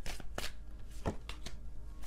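A tarot deck shuffled by hand: a string of irregular soft card slaps and taps, about half a dozen in two seconds.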